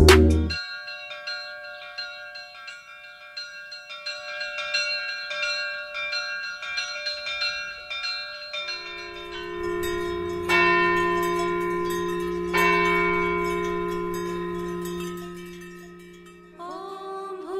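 Bell-like tones ringing in a repeated pattern of soft strikes, after a loud electronic music passage cuts off right at the start. A low steady drone comes in about nine seconds in, and two louder bell strikes near ten and twelve seconds ring on and slowly fade.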